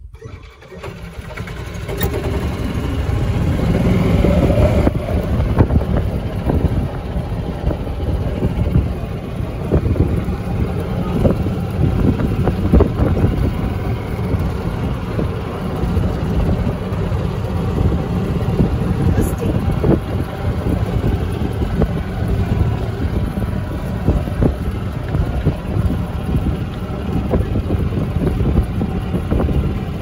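A Yamaha golf cart riding along a gravel cart path: steady rumble of the cart and its tyres with wind on the microphone, picking up about a second in as the cart gets moving.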